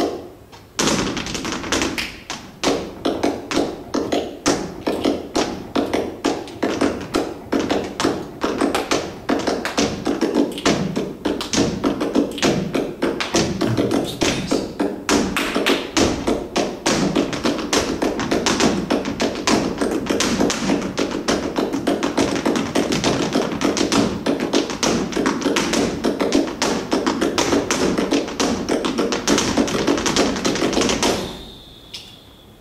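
Flamenco footwork: hard-soled dance shoes striking the floor in fast, dense taps and heavier heel stamps, breaking off briefly at the start and then running on without a pause.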